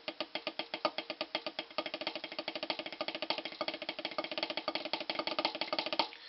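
Drumsticks striking a Vic Firth rubber practice pad set on a snare drum in a rapid, even roll, a double stroke roll exercise. The strokes start fairly spaced and speed up to a fast, dense roll about two seconds in.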